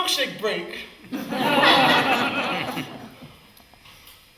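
A short wordless vocal exclamation, then about two seconds of many young voices laughing and squealing together: an audience of small children laughing.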